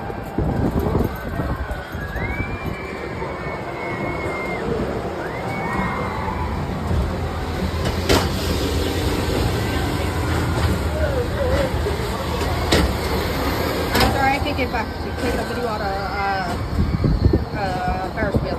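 Fairground ambience: distant voices and calls over a low steady rumble, with three sharp clicks about 8, 13 and 14 seconds in.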